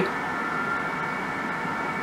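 Steady room noise: an even hiss carrying a faint, steady high whine.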